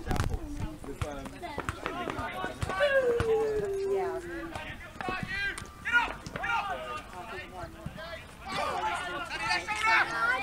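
Footballers shouting and calling to each other across an outdoor pitch, including one long drawn-out call that falls in pitch about three seconds in. A sharp thud of a football being kicked comes right at the start.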